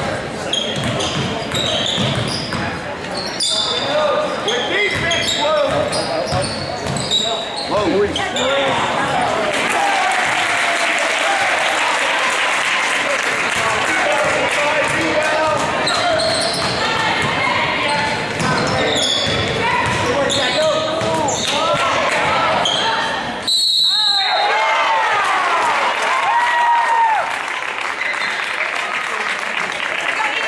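Basketball bouncing on a hardwood gym floor during play, with players and spectators calling out and shouting, echoing in a large gym. The sound changes suddenly about three-quarters of the way through.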